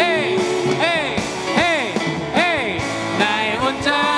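Live contemporary worship music: a praise band with acoustic guitar and several singers, with a lead line swooping up and down in pitch four times in quick succession.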